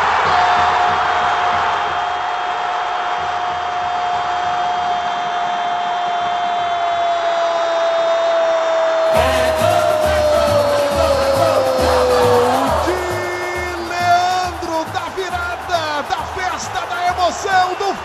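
A football radio commentator's long, drawn-out goal shout, held on one pitch for about twelve seconds and sinking slightly as it ends. About nine seconds in, a goal jingle with a steady beat and singing comes in underneath and carries on after the shout.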